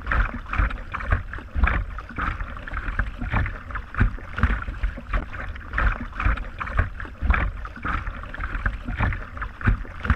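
Kayak paddle strokes splashing and dripping water, picked up close by a GoPro's built-in microphone on the kayak's bow, as repeated irregular splashes over a low buffeting rumble on the microphone.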